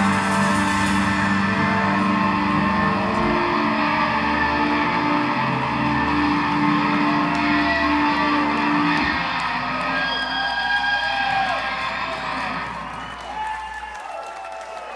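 A live rock band holds a final sustained chord on electric guitars and bass. The low end drops out about nine seconds in, leaving higher wavering tones that fade away near the end.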